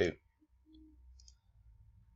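A faint computer mouse click a little past one second in, over a low steady hum, just after the last spoken word ends.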